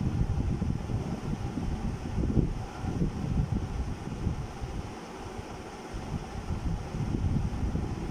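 Low, uneven rumble of air buffeting the microphone, like wind noise, easing a little about five seconds in.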